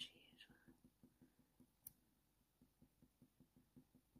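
Near silence, with the faint, quick strokes of a colour pencil shading on paper, about six or seven a second. There is one faint click a little before the middle.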